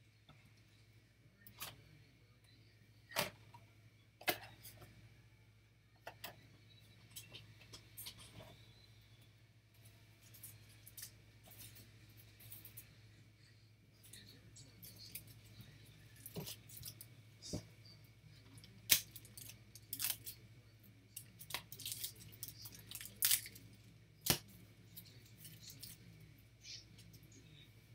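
Scattered faint clicks and knocks at irregular times, more frequent in the second half, over a steady low hum.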